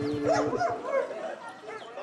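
A dog barking several times in quick succession.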